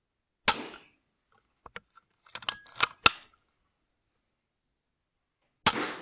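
Two sharp shots from a Weihrauch HW100 .22 pre-charged air rifle, the first about half a second in and the second near the end. Between them comes a run of small clicks as the sidelever action is worked to load the next pellet.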